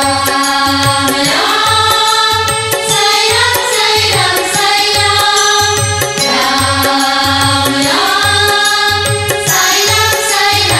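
Oriya devotional bhajan: long chanted vocal phrases that rise in pitch and then hold, over a steady drum rhythm.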